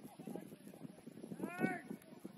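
A footballer's shout across the pitch: one call about one and a half seconds in, over faint background voices.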